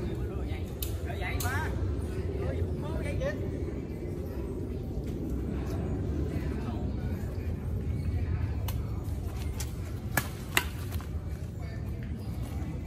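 Steady low rumble of city traffic under people chatting. A few sharp clicks of badminton rackets hitting a shuttlecock, the two loudest about half a second apart near the end.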